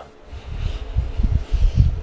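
Dull, low thumps and rumbles close to the microphone, starting about half a second in and coming irregularly: footsteps and handling bumps from moving about with a phone in hand.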